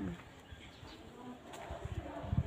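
Faint background noise with a brief, low insect buzz, and a small click about one and a half seconds in.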